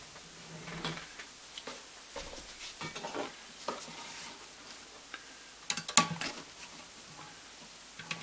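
A webbing strap being handled and rustling at a sewing machine, with scattered small clicks and a few sharper clicks about six seconds in.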